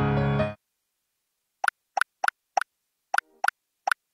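Background music cuts off suddenly about half a second in. After a silent gap come seven short, bright pop sound effects at uneven spacing, marking paper stickers being swapped on the board.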